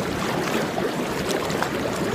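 Hot tub jets churning the water, a steady rush of bubbling.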